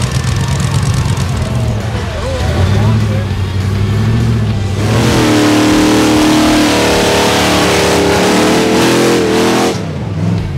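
Rock bouncer buggy engine: a low rumble with some rises in pitch for the first half, then about halfway through a rock bouncer held at high revs, its engine note steady and high while its spinning tires throw snow and mud. The high-revving sound stops suddenly just before the end.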